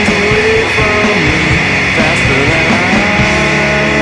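Loud, distorted electric-guitar rock from a full band with no vocals, the guitar notes bending up and down in pitch.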